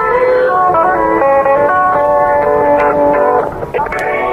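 Guitar-led music playing from a car radio, with the dull, narrow sound of a radio broadcast.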